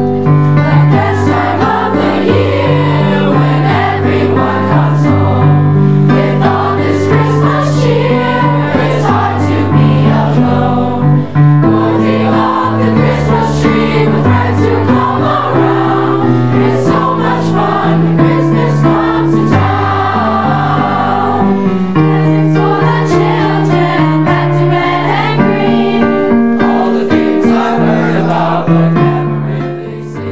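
A youth choir singing a song with instrumental accompaniment, continuous and loud, with low notes stepping through the chords beneath the voices.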